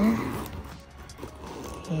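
The metal zipper of a Louis Vuitton Palm Springs Mini backpack being pulled open around the bag's edge, a soft rasp with small clicks.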